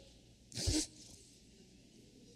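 A brief breathy vocal sound, a short laugh or puff, into a handheld microphone, about half a second in, with a low microphone pop.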